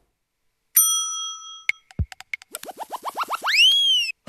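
Cartoon-style transition sound effects: a bell-like ding about a second in, a quick falling swoop near the middle, then a run of short rising whistles that speed up into one long whistle rising and falling near the end.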